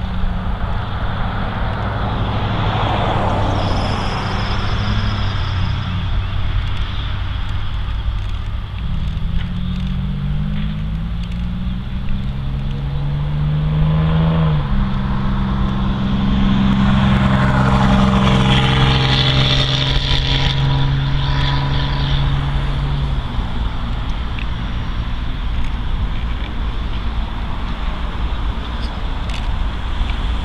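A road vehicle accelerating over a steady low rumble. Its engine pitch climbs for several seconds, drops abruptly about halfway through as it shifts gear, then holds steady while it passes close by with tyre noise.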